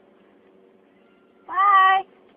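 A person's short, high-pitched vocal squeal, about half a second long near the end, rising slightly in pitch, over a faint steady hum.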